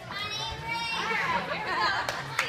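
Young girls' voices shouting high-pitched cheers, with more wavering calls after about a second.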